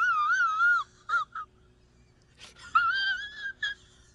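A man's wheezing, almost silent laugh: thin, high-pitched, wavering squeaks forced out on the breath. A long quavering squeal is followed by two short squeaks. After a gasp about two and a half seconds in, a second quavering bout ends in one more squeak near the end.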